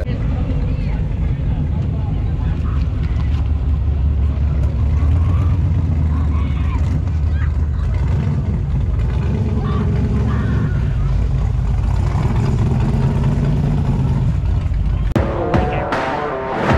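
Rat rod engine running with a deep, steady rumble as the car rolls by, with voices in the background. Music comes in about a second before the end.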